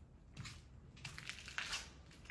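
Footsteps crunching over rubble, grit and broken plaster on a tiled floor: a few uneven crunches, the loudest near the end.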